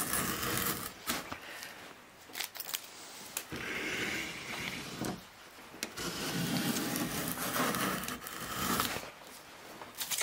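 Veritas combination plane cutting a groove in a wooden board: three strokes of the blade scraping off shavings, the longest about six seconds in, with light knocks between strokes as the plane is set back on the wood.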